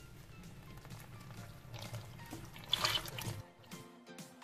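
Liquid cake batter ingredients pouring in a stream into a metal bowl of flour and cocoa, a steady rushing pour with a louder burst about three seconds in, over background music.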